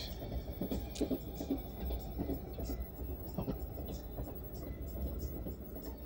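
Passenger train running, heard from inside the carriage: a steady low rumble with scattered light knocks.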